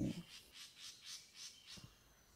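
Faint birdsong: a rapid run of high, thin chirps, several a second, that fades out shortly before the end.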